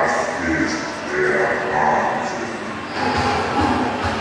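A fairground ride's loudspeakers: a voice over the public-address system mixed with music, with a regular bass beat coming in about three seconds in.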